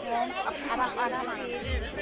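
Several people talking over one another. Near the end, music comes in with low drum beats about twice a second.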